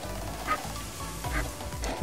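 A paper shop towel wiping a powder-coated stainless steel tumbler down with rubbing alcohol: a soft, scratchy rubbing with a couple of louder strokes. Faint background music runs under it.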